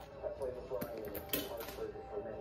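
Faint television audio of a hockey broadcast heard across a room: indistinct speech with some music, and a few light clicks.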